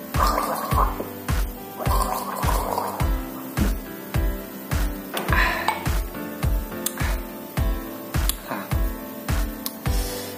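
A man gargling a mouthful of lime juice deep in the throat, in bubbling spells through the first three seconds and once more about five seconds in. Background music with a steady beat runs under it.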